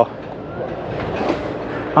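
Wind buffeting the microphone on an open harbour pier: a steady, rough rushing noise with no pitched sound in it.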